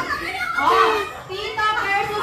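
A group of people calling out and chattering excitedly over one another in high voices, with no music playing.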